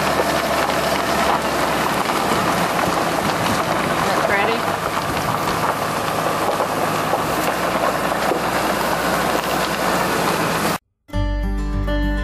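Steady road and wind noise of a Dodge Ram dually pickup truck driving, heard from inside the cab. Near the end it cuts off suddenly, and acoustic guitar music begins.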